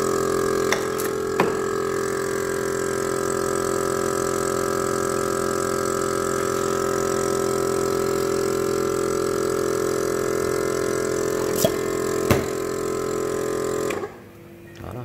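Vacuum pump of an Enolmatic bottle filler running with a steady hum, cutting off suddenly at the very end as it is switched off. A few sharp clinks from the glass bottles being handled come about a second in and again near the end.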